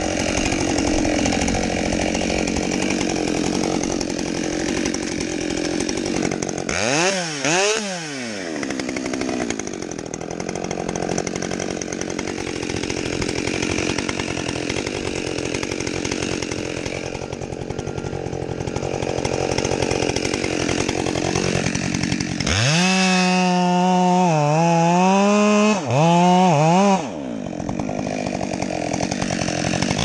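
Husqvarna 572 XP chainsaw with a 28-inch bar running at low speed, given a couple of quick throttle blips about seven seconds in. From about 22 seconds it is held at high revs for some four seconds, its pitch wavering, and it is blipped again right at the end.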